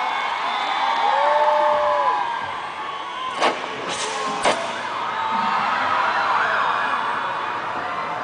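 Concert crowd cheering between songs, with long whistles and screams gliding up and down in pitch. Three sharp, loud, close-by smacks come just after the middle.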